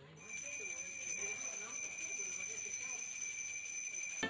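Altar bell rung at the elevation of the host during the consecration: a steady, unbroken high ringing that starts a moment in and holds throughout.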